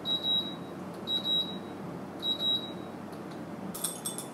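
Faema Faemina coffee machine's control panel beeping three times, each high tone about half a second long and a second apart, as its buttons are pressed. Near the end, coffee beans start to clatter into a Timemore Chestnut Slim metal hand grinder.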